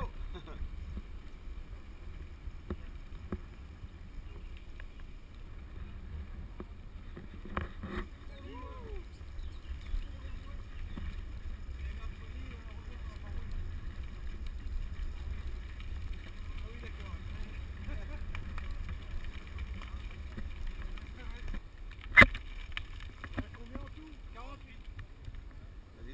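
Steady low rumble of wind and tyre noise on a moving action camera's microphone as mountain bikes roll along a track, with riders' voices faintly at times. One sharp knock stands out about four seconds before the end.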